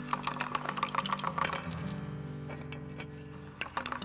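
Dice rattled in cupped hands: a quick run of sharp clicks that stops after a second and a half, then starts again near the end. Soft sustained background music underneath.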